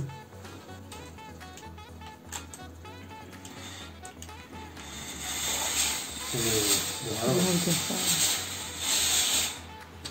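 Fakir Verda steam-generator iron releasing a strong jet of steam: a loud, even hiss sets in about halfway through, lasts about four seconds and cuts off abruptly. Before it, the fabric of a shirt rustles as it is smoothed out on the board.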